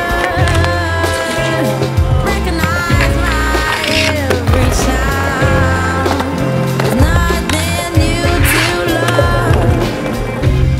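Background music with a steady bass line, with inline skate sounds mixed in: wheels rolling and grinding, and a few sharp knocks of landings, about two, seven and eight seconds in.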